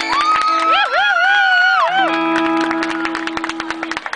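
Live rock band with electric guitars, bass and drums playing: a held lead note that bends in pitch rides over sustained chords and steady drum strokes, then the chords ring on with the drums after about two seconds.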